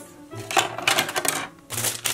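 Playmobil hard plastic toy parts and plastic packaging bags handled and set down on a tabletop, making a run of quick clicks and crinkles, with background music underneath.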